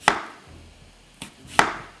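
Chef's knife slicing rounds off an apple, each cut ending in a sharp knock on the wooden cutting board: three cuts, the loudest near the end.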